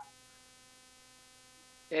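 Faint steady electrical hum, a buzz made of many evenly spaced tones, during a pause in speech; a voice starts near the end.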